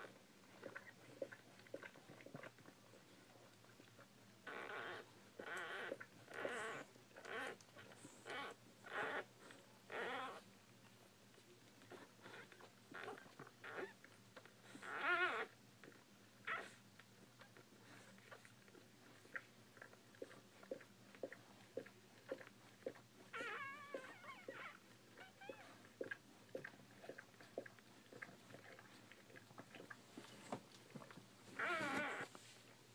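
Newborn Bull Pei puppies nursing: a run of short squeaky whines between about 4 and 11 seconds in, a louder one around 15 seconds, and a wavering cry near 24 seconds, over faint suckling clicks.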